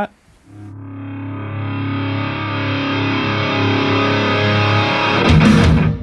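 Garage-punk rock song playing back through a Klipsch Heresy IV loudspeaker. A distorted electric guitar chord fades in and rings out, then the drums and full band come in about five seconds in, with a short break just before the end.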